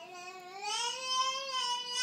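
A baby's single drawn-out vocal note, rising slightly in pitch and then holding steady for about two seconds.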